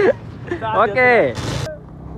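A man's voice speaking a few words, with a short burst of hiss near the end.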